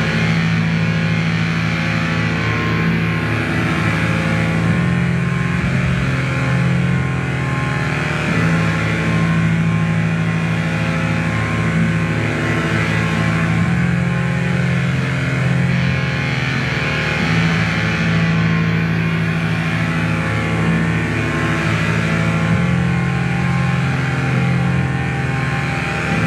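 Loud, dense experimental drone music played live. A sustained wash of noisy tones sits over a strong low bass tone that steps back and forth between two pitches every few seconds.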